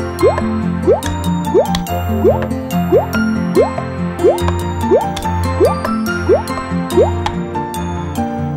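Children's cartoon background music with a run of about eleven short rising bloop sound effects, evenly spaced about two-thirds of a second apart. These are the pop-in effects of toy pieces appearing one by one.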